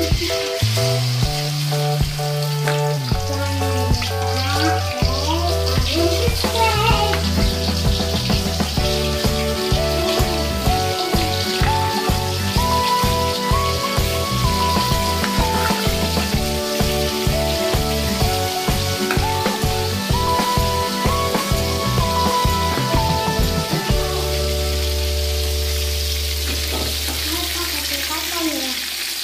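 Meat deep-frying in hot oil in a wok, a steady sizzle, with occasional stirring by a metal spatula. Background music with a beat plays over it; the beat drops out near the end.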